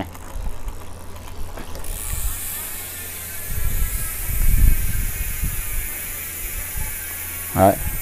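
Rear freehub of a Twitter T10 carbon road bike ratcheting as the cranks are spun backwards, a loud, fast buzz of clicking pawls that slowly drops in pitch as the spin winds down.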